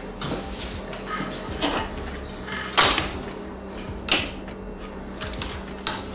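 Sharp clicks and knocks from a carbon-fibre quadcopter frame and small parts being handled on a wooden table, three of them louder, over a steady low hum.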